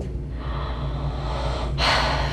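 A woman's long, steady breath out through the mouth, then a short, sharp intake of breath near the end.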